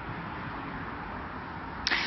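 Steady background noise of a city street at night, a low hum of distant traffic, picked up by an outdoor microphone. A woman's voice begins right at the end.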